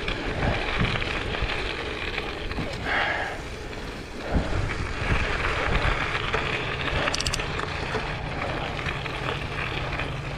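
Schwinn Copeland hybrid bike's gravel tyres rolling steadily over a gravel road, with wind on the microphone and small knocks as the bike goes over little bumps.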